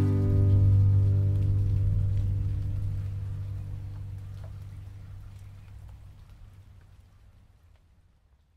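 The last chord of an acoustic guitar song ringing out and fading slowly away to silence by the end.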